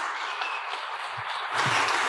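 Congregation applauding, the clapping growing louder near the end.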